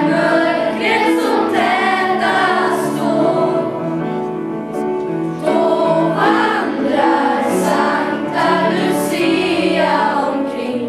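School Lucia choir of girls and boys singing together in slow phrases of long held notes, with a short break between phrases about five and a half seconds in.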